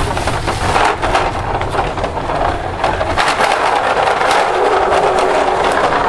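Toy car pushed by hand across a tile floor, its wheels rolling with a steady rough noise full of small clicks; a low rumble underneath fades out about halfway through.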